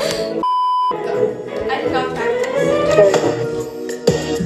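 Background pop music with voices, cut about half a second in by a short, steady electronic bleep of about half a second during which all other sound drops out, as in a censor bleep.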